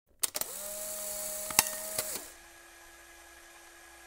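Electronic sound effects for an animated intro title: a quick cluster of clicks, then a held steady tone with two sharp ticks, after which it drops to a quieter single steady tone.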